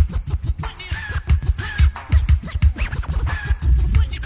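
1987 hip hop track in an instrumental break: a heavy, busy drum-machine beat with turntable scratching over it.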